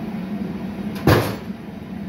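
A single sharp knock, like a metal clank, about a second in. Under it is the steady low hum of the lit glass furnace's burner.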